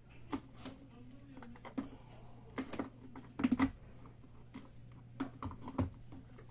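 Hands handling and opening a trading-card box: a scattering of short clicks, taps and scrapes of cardboard, the loudest cluster a little past halfway and a few more sharp clicks near the end, over a steady low hum.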